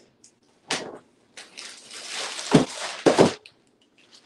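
A clear plastic bag rustling and crinkling as it is shaken out and emptied of clothes. There are two sharp thuds near the end, about half a second apart.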